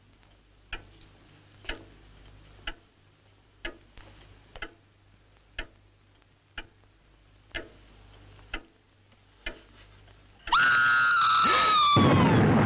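A clock ticking slowly, about once a second, in a quiet room. About ten and a half seconds in, a loud, high, shrill scream breaks out suddenly and slides slowly down in pitch.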